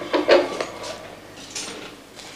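Paper rustling and a few light clicks and knocks as papers and things are handled on an office desk.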